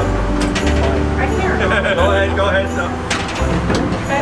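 Knocks of a boarding step stool being lifted and carried up into a railcar vestibule, about three sharp knocks in all, over a low steady rumble, with voices.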